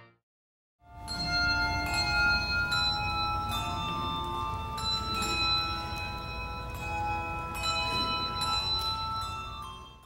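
Bells ringing a slow sequence of different pitches. Each struck note rings on and overlaps the next. The ringing starts about a second in, after a brief silence.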